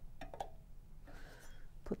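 A couple of faint, light clicks about a quarter second apart as the coffee basket is seated on its stem inside a stainless steel electric percolator, followed by a soft rustle of handling.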